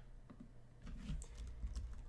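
A few faint computer clicks as the chess moves are stepped through on screen, over a low steady room hum.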